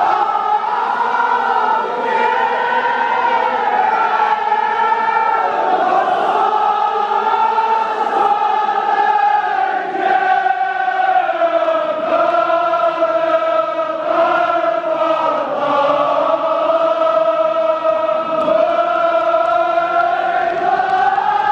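Kashmiri marsiya, a Shia mourning elegy, sung by a chorus of men in unison, with long drawn-out notes that slowly rise and fall without a break.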